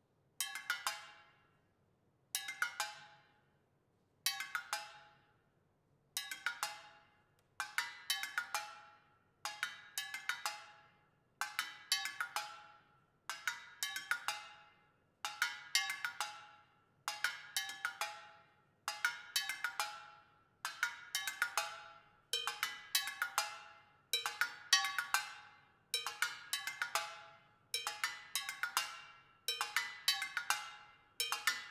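Found-metal percussion (tin cans, cowbell and other struck metal objects) played with sticks in a steady repeating figure: a quick cluster of ringing metallic strikes about every two seconds, each dying away before the next. The clusters grow fuller as it goes on, and a lower ringing note joins about two-thirds of the way through.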